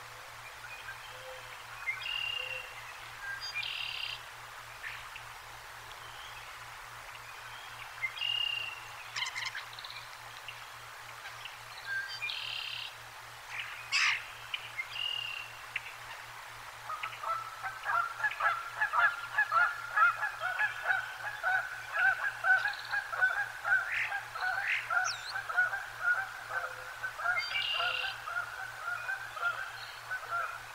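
Wild birds calling. Scattered short chirps and calls for the first half, with one sharp click about 14 seconds in. From about 17 seconds a loud, fast run of repeated calls starts, several a second, and carries on to the end.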